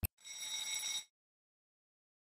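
Animated-logo sound effect: a click, then a short ringing buzz with a few steady high tones, lasting under a second and cutting off suddenly.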